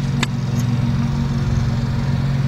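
A motor vehicle engine idling steadily, with one short click about a quarter-second in.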